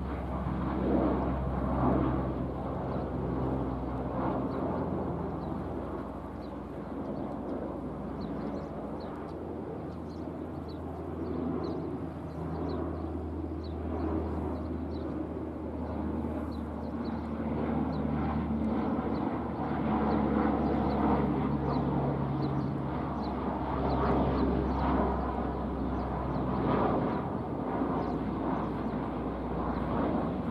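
Propeller drone of a four-engine turboprop military transport plane of the C-130 Hercules type flying over, a steady low hum that swells and fades slowly. Faint high chirps run through it from about a third of the way in.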